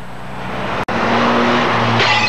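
Small hatchback, a Mk1 Ford Fiesta, driven hard through a bend: engine running and tyre noise on asphalt, growing louder through the first second, with a brief dropout in the sound just under a second in.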